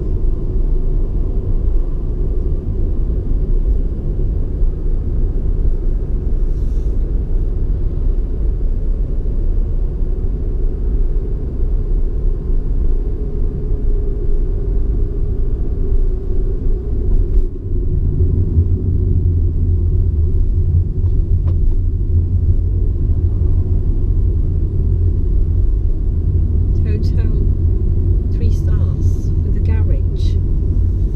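Steady low rumble of a car's engine and tyres heard from inside the cabin while driving. A little past halfway it dips for a moment, then comes back as a heavier low drone.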